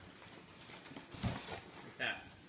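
A white cardboard box's lid flap being pulled open: a faint, brief scrape of cardboard a little over a second in.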